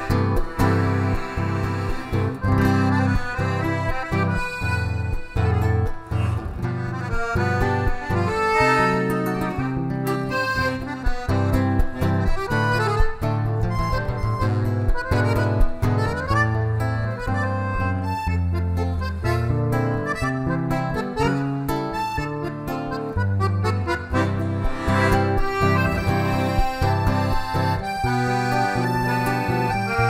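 A button accordion and an acoustic guitar playing an instrumental tune together, the accordion carrying the melody over the strummed and plucked guitar.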